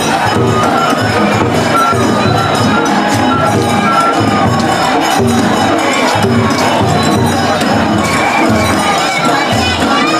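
Japanese festival float procession: a dense crowd shouting and cheering over festival music with a high piping melody and a regular low beat about twice a second.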